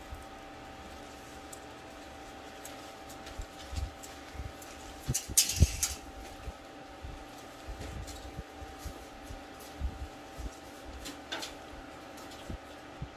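Paper towel wiped over a car's painted hood with rubbing alcohol: soft, irregular rubbing and handling noises, with a brief louder hiss about halfway through. A faint steady hum sits under it.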